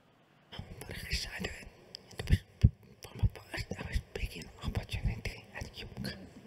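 A man deliberately speaking without voice into a microphone: whispered, unvoiced speech starting about half a second in, with sharp pops on some consonants.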